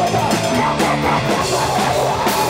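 Hardcore punk band playing live: distorted electric guitar, bass and a drum kit with regular drum and cymbal hits.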